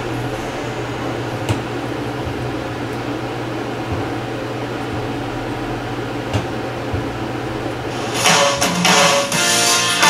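A steady low hum with a few light clicks, then swing guitar music comes in loudly about eight seconds in.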